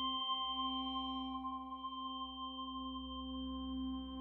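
A quiet, sustained ringing drone: one low note held steady with its overtones, an ambient musical outro.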